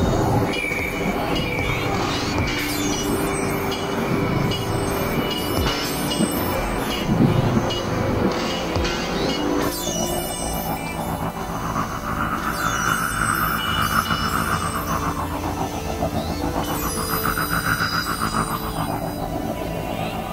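Experimental electronic synthesizer music: steady drone tones under a dense, noisy texture. About halfway through it shifts, and two slow swells rise and fall in pitch in turn.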